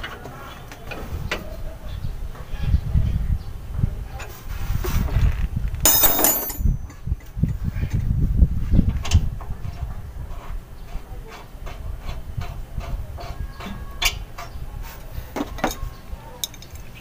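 Hand-work on a truck air dryer's hose fitting: scattered small clicks and rubbing of metal and rubber parts as the hose is fitted back on, over a steady low rumble. A brief, loud rustling hiss comes about six seconds in.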